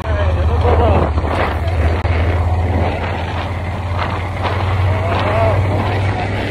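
Yamaha Super Ténéré motorcycle's parallel-twin engine running at a steady low drone while riding, with wind rushing over the phone's microphone.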